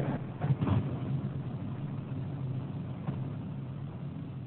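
A steady low hum of room background noise, with a brief faint voice under a second in.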